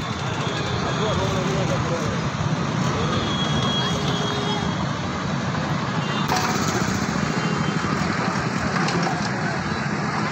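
A JCB backhoe loader's diesel engine running steadily under people talking in a crowd.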